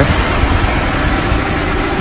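Car engine idling, a steady low rumble.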